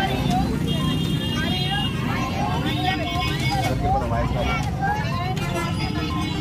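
A group of voices reciting a pledge aloud together, over steady street noise.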